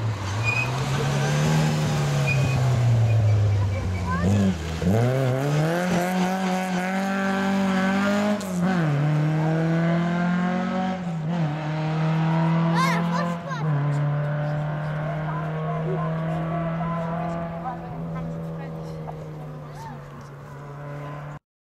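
Rally car engine accelerating hard: it revs up and drops back at each gear change about four times, then holds a steady note that fades as the car goes away.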